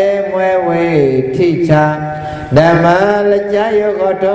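A Buddhist monk's voice chanting in long held notes that glide from one pitch to the next, with a brief break for breath about two and a half seconds in.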